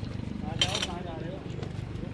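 Men talking indistinctly over a low outdoor rumble, with a brief hiss about half a second in.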